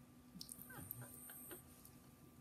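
Near silence: room tone with a steady faint hum, and a few faint, short falling whines and ticks in the middle.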